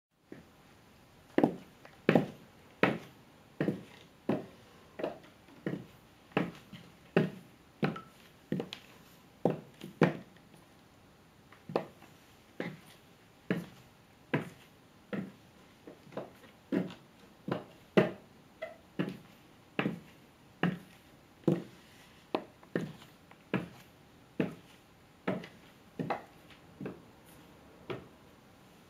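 Clear plastic platform high-heel mules clicking on a hard tiled floor with each step, at a steady walking pace of about three sharp clicks every two seconds.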